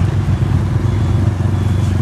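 Close road traffic at low speed: motorcycle engines passing right by together with a Hino tanker truck's diesel engine, a steady low rumble with a fast pulsing beat.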